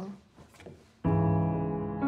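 A piano chord is struck about a second in and left to ring, its low notes held.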